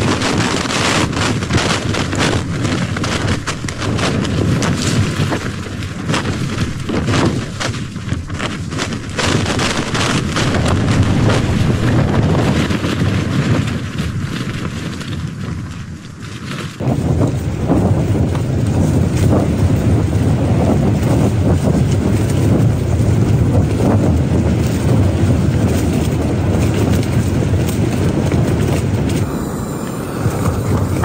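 Strong, gusting wind buffeting a backpacking tent, heard from inside, with the fabric flapping in sharp cracks through the first half; the wind is described as insane.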